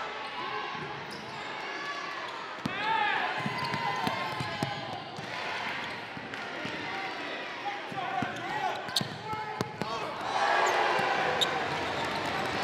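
Basketball bounced hard on a hardwood gym floor several times, with sneaker squeaks and the voices of players and spectators through the play.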